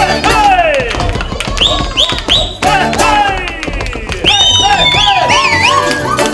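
Russian folk ensemble playing a lively dance tune on balalaikas, button accordion and wooden pipes, with wooden spoons clicking throughout. Over the music come shouted whoops and several high whistles that hold and then slide down.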